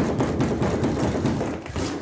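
Loud rumbling, rubbing noise of a phone's microphone being handled roughly as the phone is grabbed and jostled. It starts abruptly and dies down near the end.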